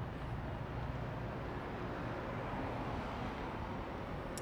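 Steady outdoor road-traffic noise, a car driving past over a low rumble, swelling slightly in the middle.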